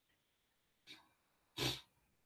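Near silence, broken about one and a half seconds in by a single short breath or sniff close to the microphone.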